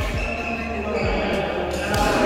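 Low thuds on a sports-hall floor, four of them: two near the start, one about a second in and one at the end. They sit over the echoing murmur of voices in a large indoor badminton hall.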